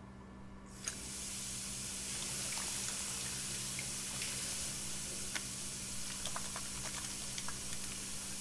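A washbasin tap turned on a little under a second in, then water running steadily into the sink, with small splashes and ticks as hands are washed under the stream.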